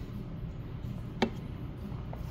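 A single sharp click about a second in, the plastic jar being set down, over faint low hum of room noise.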